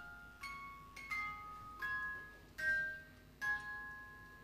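A slow melody of high, bell-like notes from a mallet-struck metal instrument such as a glockenspiel. About six notes are struck, one every half second to a second, and each rings on and fades.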